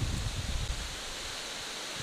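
A steady hiss of background noise, with a few faint soft low knocks in the first second; the ghee being poured onto the flour makes no sound that stands out.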